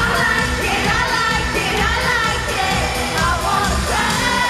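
A female singer's voice over a live pop-rock band with keyboards, guitar and drums, heard from the audience in an arena.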